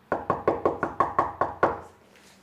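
Knuckles knocking on a door, about nine quick raps in a row that stop shortly before the end.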